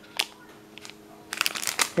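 Clear plastic packaging of washi tape rolls crinkling as it is handled: a single tick just after the start, then a rapid run of crackles in the last half-second.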